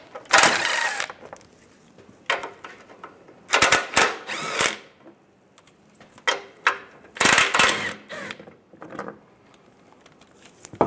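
Cordless ratchet with a 15 mm socket running in several short bursts, the longest about a second, spinning out the bolts that hold the underbody shield.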